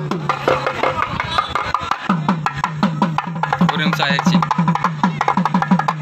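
Traditional hand drums played in a fast, even rhythm for a street procession, each low stroke dipping in pitch as it rings; from about two seconds in they settle into about five strokes a second. Crowd voices mix in with the drumming.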